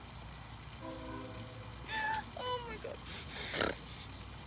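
Women laughing hard: high-pitched squealing laughs that slide down in pitch about two seconds in, then a breathy, gasping laugh near the end.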